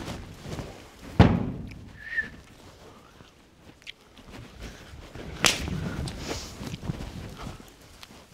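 A loose horse galloping on soft arena footing, with two sharp cracks: a loud one about a second in and another about five and a half seconds in, and fainter knocks between. A short high chirp comes about two seconds in.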